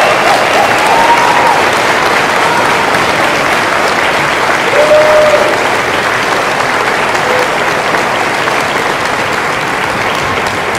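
A large audience applauding steadily, with a few voices calling out over the clapping near the start and about five seconds in.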